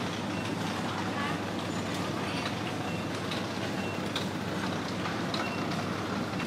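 Supermarket ambience: a steady low hum with indistinct background voices, scattered small clicks, and occasional short high beeps.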